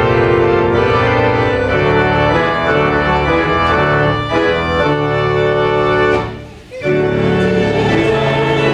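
Church organ playing sustained hymn chords, breaking off briefly about six seconds in before the next phrase.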